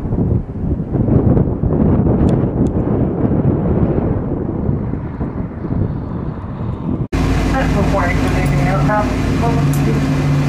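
Jet airliner landing on a runway: a loud, rough rumble of engine noise mixed with wind buffeting the microphone. About seven seconds in it cuts abruptly to inside an airliner cabin beside a turbofan engine, a steady low engine hum with people talking over it.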